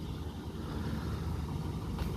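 A car engine idling: a steady low hum.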